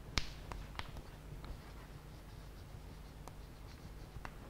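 Chalk writing on a blackboard: faint scratching strokes with a few sharp taps as the chalk strikes the board, the loudest just after the start.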